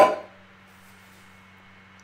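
A woman's word ends at the very start, then a quiet pause with only room tone and a low, steady hum.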